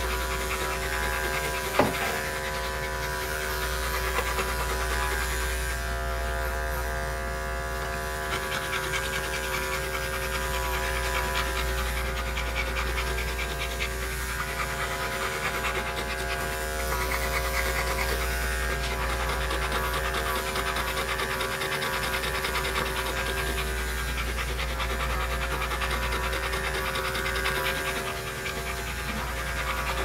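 Electric grooming clippers running with a steady whine while a large dog pants close by. A steady low bass hum lies underneath, and there is one sharp click about two seconds in.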